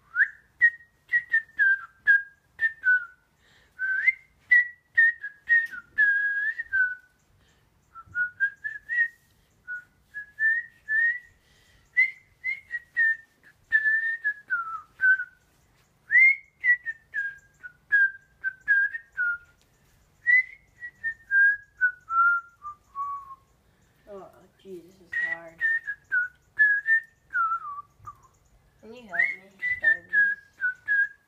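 A person whistling a tune: quick short notes in phrases that often step downward, with brief pauses between phrases. A short bit of voice breaks in twice, about 24 seconds in and near the end.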